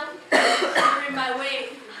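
A woman's voice: a sudden cough-like burst about a third of a second in, running straight on into a voiced sound that fades near the end.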